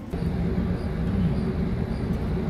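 A low, steady engine rumble that starts suddenly.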